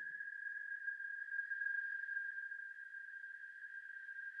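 A faint, steady high-pitched tone with fainter overtones above it, holding one pitch without change.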